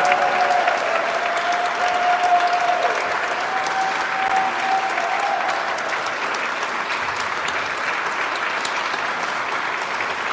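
Live audience applauding, a steady patter of many hands clapping, with a long held high tone over it that fades out about halfway through.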